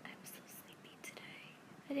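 A woman's soft, whispery voice and breaths close to the microphone, with her voice rising to normal speech near the end.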